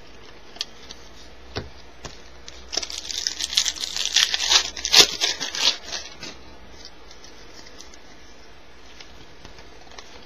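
A baseball card pack wrapper is torn open and crinkled for about three seconds in the middle, loudest near the end of the tearing. A couple of light taps come before it.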